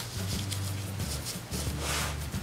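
Hands rubbing and smoothing a paper template flat on felt, a soft papery rubbing, over faint background music.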